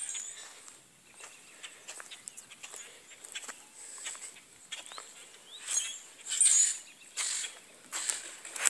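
Outdoor garden ambience with faint, short bird chirps and small scuffing clicks, broken by three louder brief rustling bursts in the second half.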